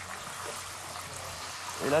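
Small floured bleak (ablettes) deep-frying in a saucepan of sunflower oil heated to 180–190 °C: a steady sizzle of bubbling oil.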